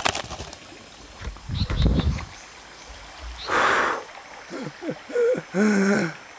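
A man defecating: a low rumble about a second and a half in, a short breathy rush a little after the middle, then a run of strained vocal grunts and gasps near the end.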